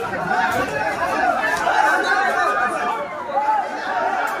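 Several people talking over one another in steady, excited chatter.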